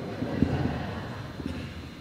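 Handheld microphone handled as it is passed from one person to the next: a low rumble with a few soft bumps, the strongest about half a second in, then fading.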